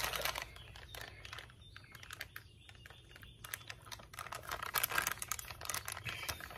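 Plastic MRE beverage bag crinkling and clicking as it is handled, in faint scattered small ticks that grow busier near the end.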